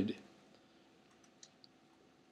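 Two faint, short clicks about a quarter second apart, about a second and a half in, over quiet room tone.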